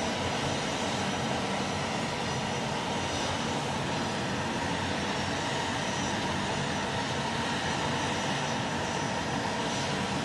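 Jet aircraft engine noise running steadily: a continuous rushing sound with a faint steady whine.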